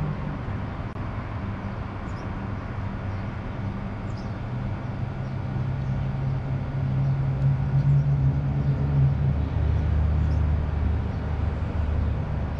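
A steady low rumble that swells louder about halfway through and eases off near the end.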